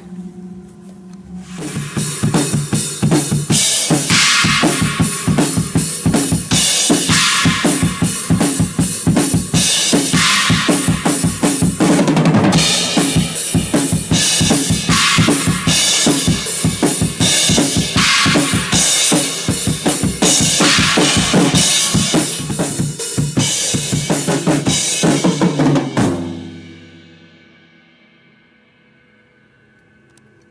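Acoustic drum kit played hard in a full take of a heavy-metal drum part: fast bass-drum and snare strokes under stretches of cymbal wash. It stops about four seconds before the end and rings out.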